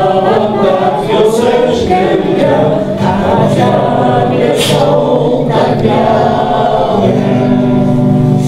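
A roomful of people, men, women and children, singing a song together, with guitar accompaniment.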